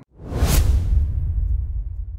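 A swoosh sound effect with a deep boom underneath, starting a moment in and fading away over about two seconds: the sting that goes with a news programme's animated logo.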